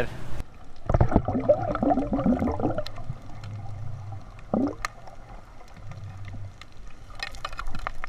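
Muffled underwater sound from a diver's camera: gurgling and bubbling over a low hum, with a few clicks near the end.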